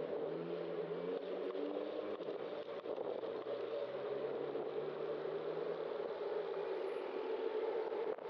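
Steady wind and road noise on a bicycle-mounted camera's microphone while riding in city traffic, with motor-vehicle engines passing close by; an engine note shifts up and down in pitch during the first few seconds, then holds steadier.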